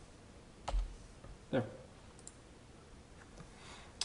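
A single sharp click from a computer keyboard or mouse a little under a second in, then two faint ticks a little after two seconds, over a quiet background.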